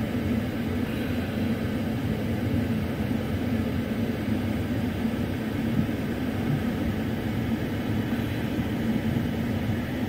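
Steady, even drone of idling vehicle engines with a faint constant hum.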